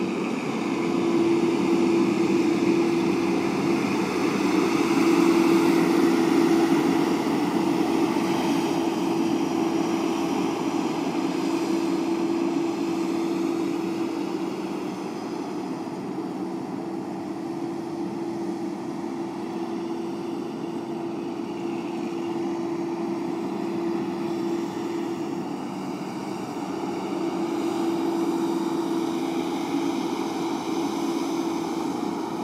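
Tractor-trailer's diesel engine running as the rig drives across a dirt lot, a steady drone that eases somewhat midway and swells again near the end.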